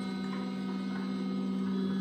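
The stepper motors of a large-format 3D printer running as they drive the print head across the vertical drawing board, a steady tonal hum with a strong pitch near 200 Hz.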